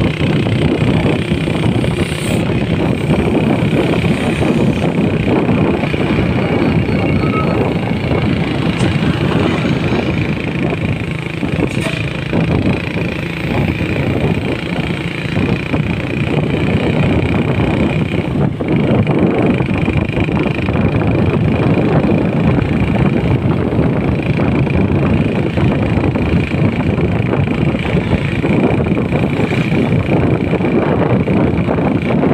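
Steady running noise of a vehicle on the move: engine hum mixed with road and wind noise, continuous and unbroken, with a steady high whine running through it.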